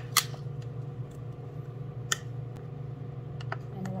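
A few sharp clicks and taps from a spoon and food container being handled, over a steady low hum.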